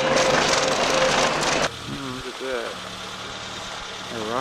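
Suzuki Samurai driving on a dirt road: engine and tyre-on-dirt noise heard from inside the cab. It cuts off suddenly about a second and a half in. A quieter steady hum follows, with a brief voice.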